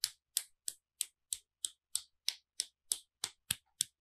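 A steady, even series of sharp clicks, about three a second, like a clock ticking, with nothing else between them.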